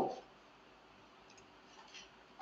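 A few faint computer mouse clicks in a nearly quiet room, just after a man's spoken word trails off at the start.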